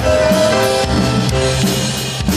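Live rock and roll band playing an instrumental break, with the drum kit driving a steady beat under electric guitar and bass.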